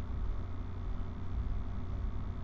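Steady low hum with a faint even hiss, and no distinct events: the background noise of a home voice recording between spoken instructions.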